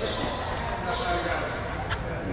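Indistinct voices of people talking in a large hall, with two short sharp knocks, one about half a second in and one near the end.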